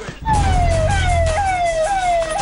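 A siren starts about a quarter second in: a loud electronic tone falls in pitch and snaps back up, about twice a second. A steady deep low rumble lies under it.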